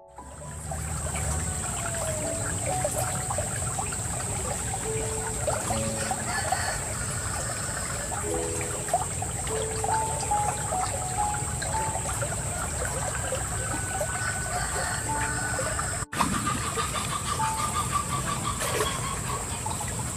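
Shallow stream water trickling and flowing, with a steady high-pitched drone above it and short bird calls scattered throughout. The sound cuts out for an instant about three-quarters of the way through.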